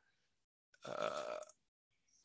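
A man's hesitant 'uh', held for about half a second near the middle; otherwise silence.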